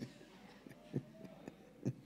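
A quiet pause in a man's talk at a handheld microphone: faint room tone with two soft, short sounds, about a second in and just before the end.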